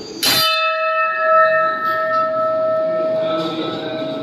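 A large hanging metal shrine bell struck once by hand, a sharp clang about a quarter second in, then ringing on steadily with several clear tones.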